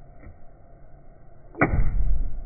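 A fist punched into a bowl of oobleck (cornstarch and water) lands with a single sudden thud about one and a half seconds in. The mix stiffens under the sudden pressure.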